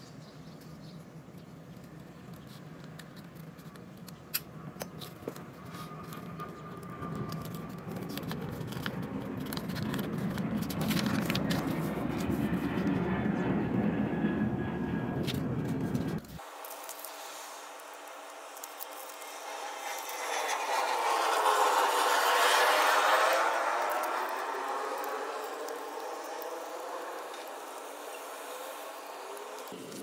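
Scissors snipping and rustling through folded paper, with a few sharp snips about four seconds in. Partway through, the sound cuts off abruptly. It is followed by a rushing noise that swells up, peaks, and fades away over several seconds.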